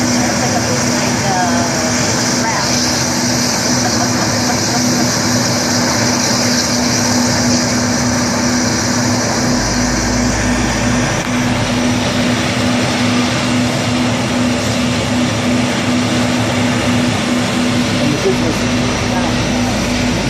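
US Navy LCAC air-cushion landing craft running on its air cushion, its gas turbines, lift fans and two ducted propellers making a loud, steady rushing noise with a constant hum. A deeper rumble swells in about halfway through and again near the end.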